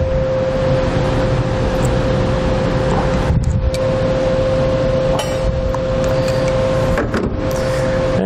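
Steady machine noise with a constant hum, and a few clicks as crimping pliers squeeze blue insulated wire connectors onto wire ends.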